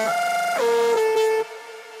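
Electronic indie-dance track played through a DJ mixer: a synth lead stepping between held notes over a bass line, then about one and a half seconds in the bass cuts out and the music drops sharply in level, leaving a single held synth tone fading away.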